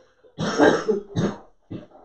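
A man coughing in a short fit: three coughs in quick succession, the first the longest.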